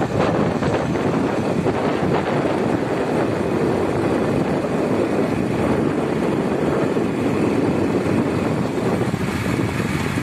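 Steady rush of wind and road noise from a moving vehicle.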